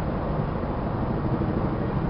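A steady, loud low rumble with a rough noise over it, unbroken and unchanging through the two seconds.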